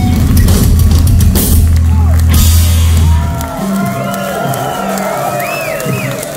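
Live punk rock band (electric guitar, bass and drums) ending a song with a loud held final chord and drum and cymbal crashes, cutting off about three and a half seconds in. The crowd then cheers, whoops and whistles.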